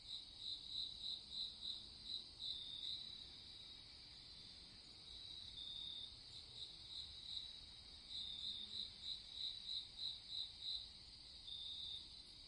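Crickets chirping faintly in runs of about three to four chirps a second, over a steady high insect trill.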